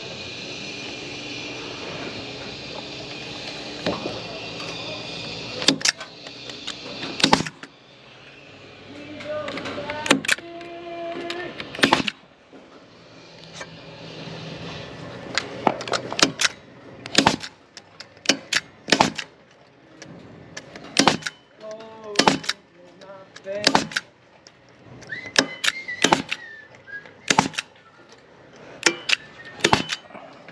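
Pneumatic Senco JoistPro 150XP positive-placement nailer firing nails through a steel joist hanger into timber, sharp single shots at irregular intervals, coming thicker in the second half. A steady machine hum runs for the first several seconds and then cuts off.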